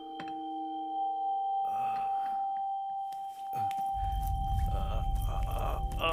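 Tense film score: a single high drone tone held throughout, with a deep low rumble coming in about four seconds in, and faint rustling movement sounds.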